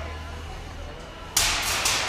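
Combat robot's spinning drum weapon biting into its opponent's wheels and titanium wedge: a sudden harsh burst of metal impacts and grinding starts about a second and a half in, after a low steady hum.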